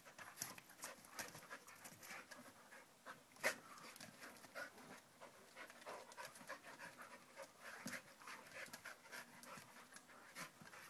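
Two dogs play-wrestling, heard faintly: quick panting and breathy play noises with many small clicks, and one sharp click about three and a half seconds in.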